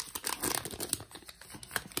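Foil wrapper of a Pokémon trading card booster pack crinkling and rustling as it is opened and the cards are pulled out: a quick run of crackles.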